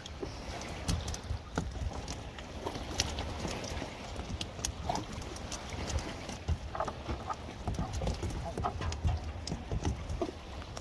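Freshly netted mullet dropping out of a cast net and flapping on a wet wooden boardwalk: a run of irregular light taps and slaps on the boards.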